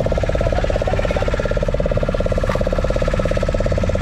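Fishing boat's engine running steadily, a fast, even throbbing drone.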